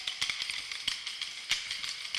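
Wooden Kolkali sticks clacking together in a run of sharp, uneven clicks over a steady background hiss. The loudest strike comes about one and a half seconds in.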